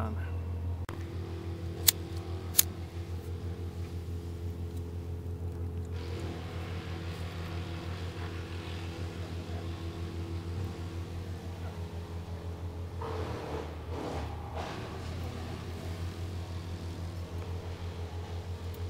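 Background chainsaw engines droning steadily, with two sharp clicks about two and two and a half seconds in from a cigarette lighter being struck to light paper in a Kelly kettle's fire base.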